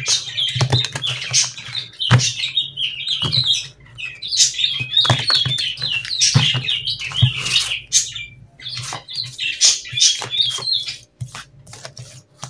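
A small bird chirping and warbling almost without pause, over the soft clicks and riffles of a deck of cards being shuffled by hand. The bird falls quiet about eleven seconds in, leaving a few card clicks.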